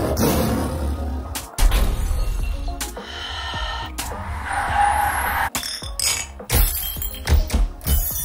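Stock sound effects played back one after another, each cut off after a few seconds: a tiger roar, then car tyres squealing in a drift, then a pub brawl with clinking glasses and punches near the end, over background music.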